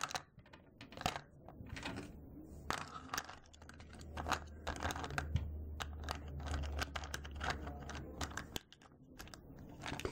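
Small clicks and rattles of polymer clay charms and their metal findings knocking against each other and the plastic compartment box as fingers rummage through them, with a low hum in the middle few seconds.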